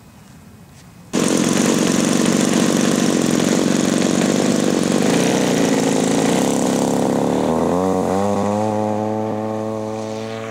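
RCGF 30cc single-cylinder two-stroke gas engine and propeller of a model aerobatic plane running hard through its takeoff run, starting abruptly about a second in. Near the end its pitch rises and then holds steady as the plane lifts off, slowly getting quieter.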